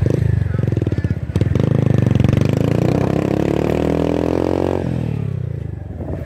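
Motorcycle engine running hard on a mountain climb, its note slowly falling, then easing off sharply about five seconds in as the throttle is closed.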